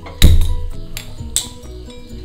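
A black metal kadai set down on a gas stove's pan support with a loud clank, followed by two lighter knocks, over background music.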